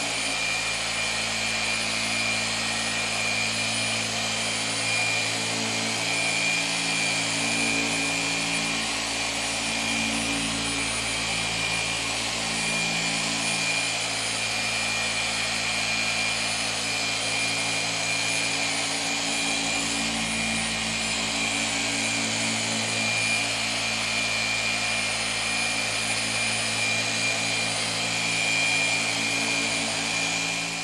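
Rupes machine polisher with a foam pad running continuously against a car's painted door during the finishing polish of a paint correction: a steady motor whine with a high tone, its lower hum shifting slightly in pitch now and then as the pad is pressed and moved over the panel.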